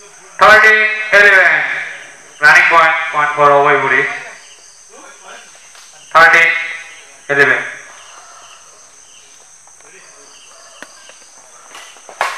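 Men shouting loudly in short bursts, about six shouts in the first eight seconds, one of them the score "11". A quieter stretch follows with a few faint taps. A steady high-pitched hum runs underneath throughout.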